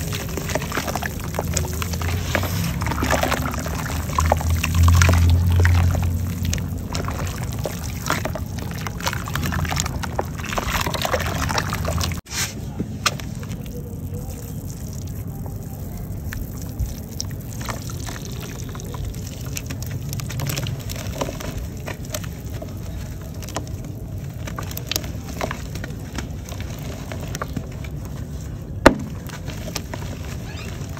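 Thick wet red clay slurry squelching and sloshing as hands knead it in a plastic basin, with dry clay crumbling into the water. The sound drops quieter after a sudden break about twelve seconds in, and a single sharp crack comes near the end.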